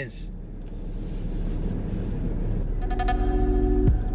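Low, steady rumble inside a moving car's cabin, with no speech over it. About three seconds in, background music with sustained tones and a beat comes in over it.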